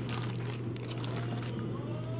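Plastic packaging crinkling as it is handled, dying away after about a second, over a steady low hum.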